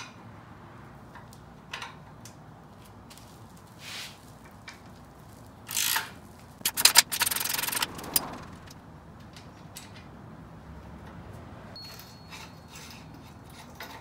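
Wrench working the long pivot bolt of a Yamaha YFZ450 upper A-arm: light ticks and metal rubbing, then a louder burst of metal scraping and clatter about six to eight seconds in.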